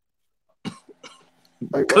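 A short cough about half a second in, followed near the end by a man starting to speak.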